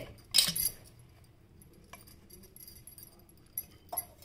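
A few metallic clinks and scrapes on a stainless-steel pot as soft cooked mash is handled in it: a louder rattle about half a second in, then single light taps near two seconds and near the end.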